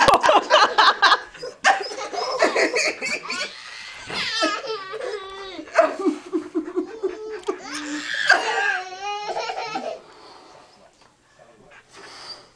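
A toddler girl laughing hard in long, choppy bursts of giggles. The laughter dies away about ten seconds in.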